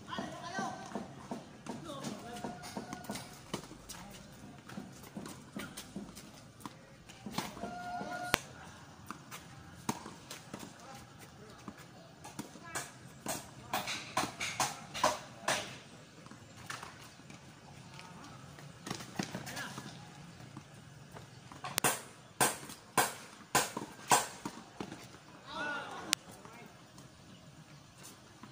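Tennis rally on a hard court: the ball is struck by rackets and bounces off the court in sharp pocks. They come in irregular runs, thickest around the middle and again a few seconds before the end.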